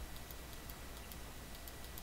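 A few faint computer mouse clicks over low room hiss.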